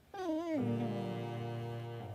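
A dog howling a wavering, drawn-out note in tune with a song, gliding down in pitch and ending about half a second in, then a sustained synth chord.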